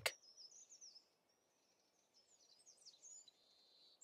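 Faint birds chirping: scattered short, high chirps over near silence.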